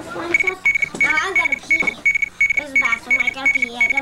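An electronic alarm beeping rapidly, one high note about three times a second, starting a moment in and going on without a break, with voices talking over it.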